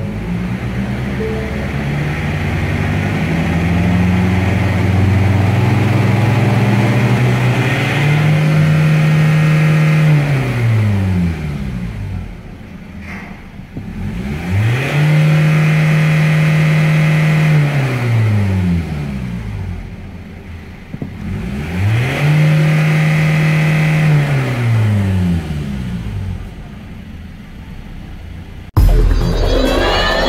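2016 Ford Ranger's 2.2-litre four-cylinder turbo-diesel running at idle, then revved three times. Each time the engine note climbs, holds for a couple of seconds, and falls back to idle.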